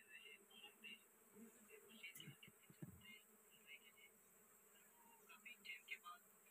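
Faint steady hum of a mass of honey bees swarming over an exposed wild comb, with a couple of soft low thumps about two to three seconds in.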